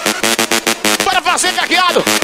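Rock doido electronic dance music from a live aparelhagem DJ set, with a fast, steady beat. About a second in, a voice with sliding pitch comes in over the beat.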